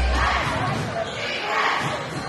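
A basketball dribbled on a hardwood gym floor, with crowd chatter and voices echoing in a large gym. A music track's heavy bass cuts out just after the start.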